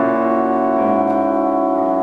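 Steinway concert grand piano and orchestra playing a piano concerto: a full chord sounds at the start and rings on, sustained.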